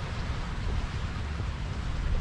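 Wind and sea noise aboard a catamaran under sail: a steady rushing hiss over an uneven low rumble of wind buffeting the microphone.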